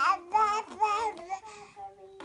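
A baby babbling in a sing-song voice: a quick run of loud, pitched syllables that rise and fall, trailing off about halfway into a quieter held note.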